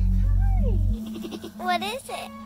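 A Nigerian Dwarf doe in labor bleating: a short falling call, then a rising, strained call near the end. Background music with a low steady bass plays under it and stops about a second in.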